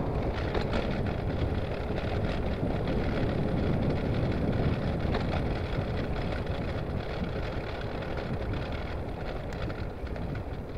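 Wind rushing over a handlebar-mounted microphone on a moving bicycle, with tyres running on tarmac and a few faint clicks from the bike.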